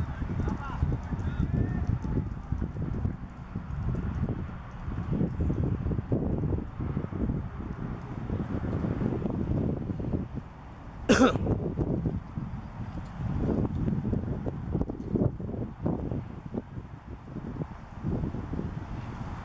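Outdoor cricket-ground ambience: a steady low rumble with indistinct distant voices, and one short, loud shout about eleven seconds in.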